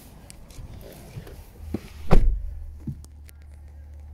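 Small knocks and one louder thump about two seconds in, from the camera being handled and bumped inside a car cabin, over a low steady hum.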